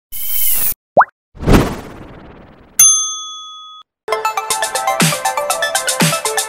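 Logo-intro sound effects: a swish, a quick rising blip, a whoosh that fades away, then a single bell-like ding that rings for about a second and cuts off. About four seconds in, electronic music with a steady beat starts.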